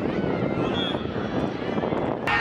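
Steady low rumble with faint shouts and calls from players.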